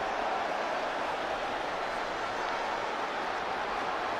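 Steady crowd noise from a football stadium, an even wash of many voices heard between lines of match commentary.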